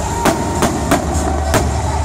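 Aerial fireworks bursting overhead: about four sharp bangs in two seconds over a continuous low rumble.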